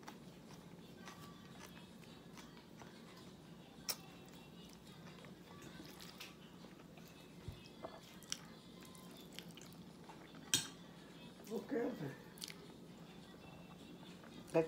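Faint eating sounds of a person eating by hand from a glass bowl: quiet chewing with a few sharp little clicks and taps scattered through, and a brief mumbled voice about two-thirds of the way in.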